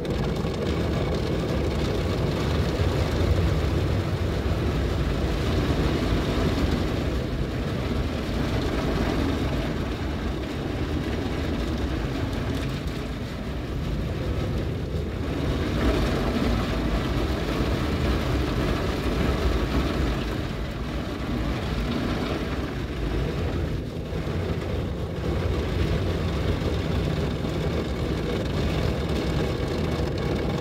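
Spinning cloth brushes and water spray of a PDQ Tandem SurfLine automatic car wash scrubbing the car, heard from inside the cabin as a steady, deep wash of noise.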